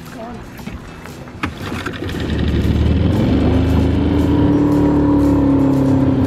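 Small outboard motor on a rowing boat running steadily under way, coming in loud about two seconds in and rising slightly in pitch before holding steady.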